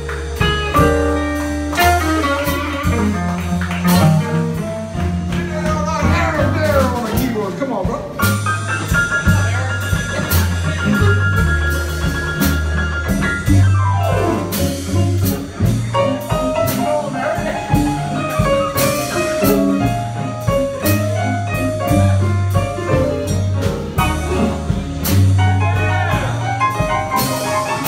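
Live blues band playing: an electric guitar lead over bass, drums and keyboard. About nine seconds in the lead holds a long high note, then slides down in pitch.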